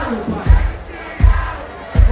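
Live pagode band playing with a crowd's voices over it; a deep drum beat lands about every three quarters of a second.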